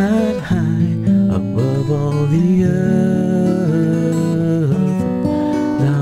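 Music: a man singing a slow worship song in long held notes, accompanying himself on acoustic guitar.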